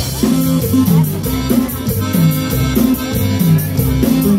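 Live norteño band playing: accordion, guitars, bass and drum kit over a steady, repeating bass line and beat.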